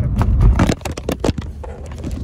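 Low road rumble inside a moving car's cabin, with a quick run of knocks and scrapes in the first second and a half as the phone recording it is handled and swung about.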